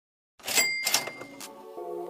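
A ringing ding sound effect: three quick clicks with a bell-like ring over the first, followed near the end by the sustained chord of a music track starting.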